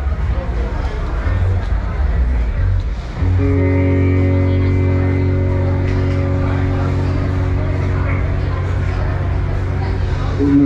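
Live band's amplified instruments between songs. For the first three seconds there is loose, uneven playing. From about three seconds in, a single chord with a strong low note is held steady to the end.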